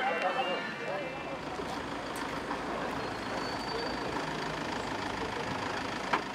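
Outdoor crowd chatter with a vehicle engine running nearby. The engine's low rumble grows stronger about four to five seconds in.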